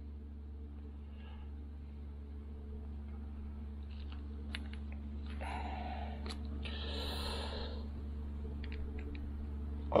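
Hands working a twin-carburetor rack on a workbench: a few small metallic clicks and a few seconds of rustling as the parts are handled and a screw is started. A steady low hum runs underneath.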